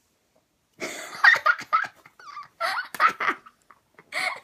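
Children laughing and squealing in loud, broken bursts, starting about a second in.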